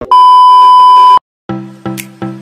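Loud, steady test-tone beep of a TV colour-bars test pattern, a single pitch near 1 kHz lasting about a second and cutting off suddenly. After a short silence, music starts with notes repeating about two or three times a second.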